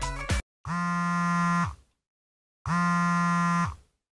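Smartphone vibrating with an unanswered incoming call: two steady buzzes, each about a second long with a second's gap, sagging in pitch as each stops. A brief snatch of music sits at the very start.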